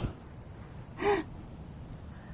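One short breathy gasp from a person, about a second in, over a low background hiss.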